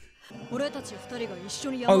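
Anime episode audio: a character speaking Japanese over background music, starting after a brief lull, with a man's voice coming in loudly near the end.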